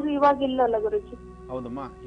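A man's voice over soft, steady background music, with a short pause in the voice about a second in.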